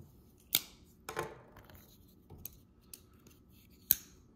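Open folding knives being handled and lifted off a table: a sharp click about half a second in, a duller knock about a second in, a couple of faint ticks, and another sharp click near the end.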